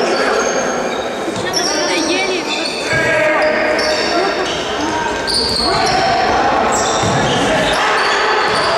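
Indoor futsal play in a large echoing sports hall: the ball thudding off feet and the floor, and many short, high-pitched squeaks of players' shoes on the court, with players' voices calling out.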